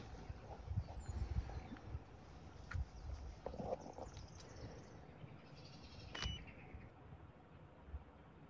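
Faint outdoor ambience: an uneven low rumble with a few soft handling knocks, and one sharp click about six seconds in.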